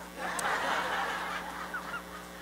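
A congregation laughing together at a joke from the pulpit: many voices at once, rising about a quarter second in and dying away toward the end.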